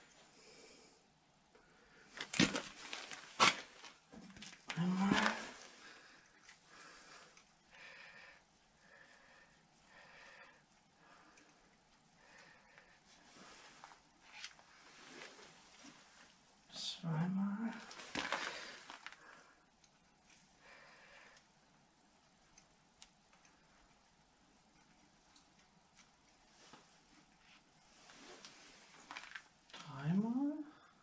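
Scattered metallic clinks and knocks of a wrench and bolts as the bolts of a Fendt tractor's PTO shaft cover are backed out, with two sharp knocks a second apart near the start. A couple of short vocal sounds rise in pitch now and then.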